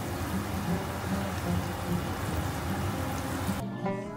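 Yukjeon (beef and egg pancakes) sizzling in two frying pans, a steady hiss that cuts off near the end, over background guitar music.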